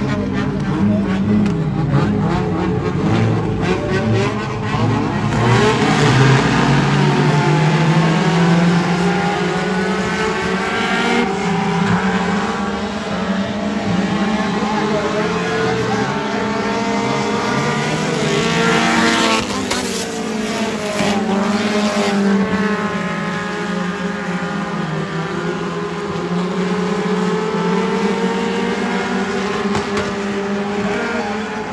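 Several dirt-track race car engines running and revving as the cars circle the oval, their pitch rising and falling lap by lap. About two-thirds of the way through, one car passes close and its engine note sweeps up and down.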